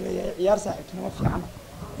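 A man speaking Somali in a steady, continuous delivery.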